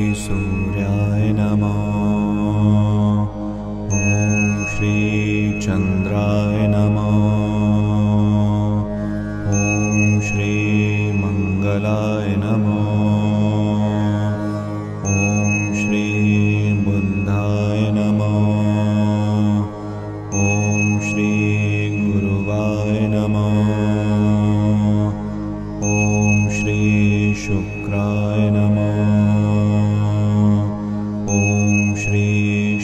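Devotional Hindu mantra chanted over a steady drone, the same chanted line repeating about every five and a half seconds, with a high ringing tone at the start of each repetition.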